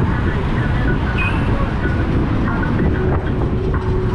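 Loud, steady road noise of a ride along a city street, heavy wind rumble on the microphone, with a few faint short high tones.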